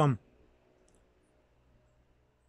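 A man's voice finishing a spoken word just after the start, then near silence.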